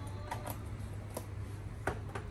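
Three or four light, sharp clicks of small items being handled on a kitchen counter, over a steady low hum.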